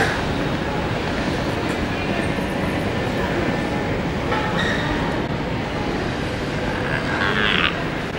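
Steady rumble of a large airport terminal hall's background noise, even throughout. A short high-pitched voice sounds near the end.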